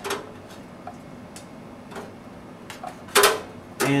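Thin sheet-metal motherboard I/O shield clicking against the rear opening of a steel PC case as it is pressed into place: a sharp click at the start, a few faint ticks, and a louder metallic clack about three seconds in.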